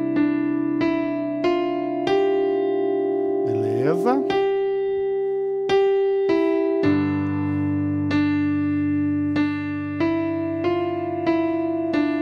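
Electronic keyboard on a piano voice playing a slow single-note hymn melody in the right hand over a held open fifth in the left hand, C and G. About seven seconds in, the left hand changes to a lower G–D fifth. A short rising sweep is heard about four seconds in.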